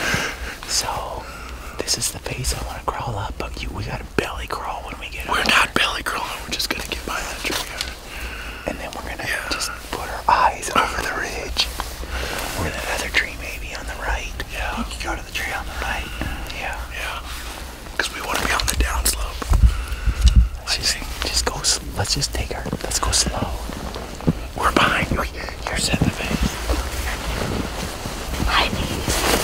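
Men whispering to each other in low, hushed voices.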